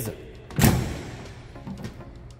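A single heavy thump about half a second in, with a booming decay that fades over about half a second.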